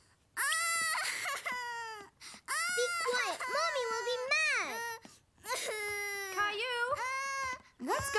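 Young children crying and wailing in high-pitched voices: three long, drawn-out cries with short breaks between them.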